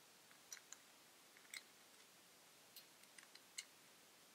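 Faint, sharp metallic clicks and ticks, about half a dozen at uneven intervals with the loudest near the end, from a small hex key turning a screw on an aluminium camera L-bracket.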